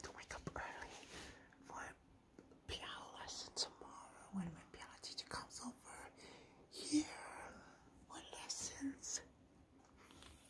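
Faint whispering in irregular breathy bursts, with a few light clicks.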